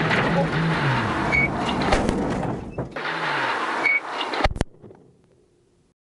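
Rally car's engine revving hard through the gears in the cabin, then the crash: several sharp bangs as the car goes off the road and strikes the bank. The loudest impact comes about four and a half seconds in, after which the sound dies away to near silence.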